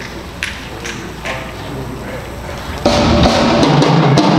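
High school concert band starting a piece with drum kit and bass drum, loud from nearly three seconds in. Before it come a few sharp taps a little under a second apart over quiet hall noise.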